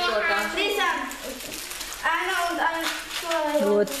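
Children's voices talking over one another, with a short lull about a second in.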